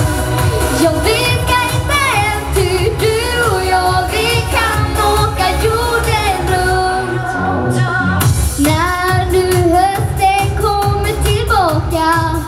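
A young girl singing a pop song live into a microphone, over backing music with a steady beat.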